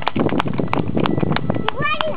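Hoofbeats of two ridden horses walking on sand, as irregular knocks, with indistinct voices in the background and a rising voiced sound near the end.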